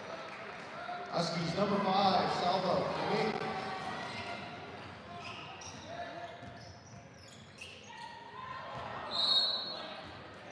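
Basketball game in a gymnasium: voices calling out across the hall, the ball bouncing on the hardwood floor, and near the end a short high whistle blast, the referee stopping play for an out-of-bounds.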